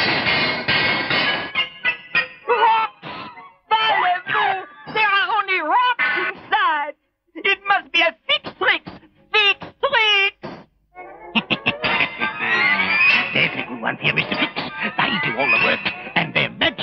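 Cartoon soundtrack music, broken up by short wordless vocal sounds that slide up and down in pitch, with brief gaps between them. The music becomes fuller over the last few seconds.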